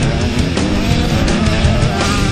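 Heavy rock music with a motocross bike's engine revving over it, its pitch rising and falling.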